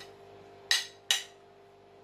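Ceramic plates clinking twice, about half a second apart, as they are swapped over, with a faint steady hum underneath.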